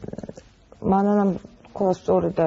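Speech: a woman's voice hesitating, with a low rattling sound, then one long held 'ehh', before ordinary talk resumes near the end.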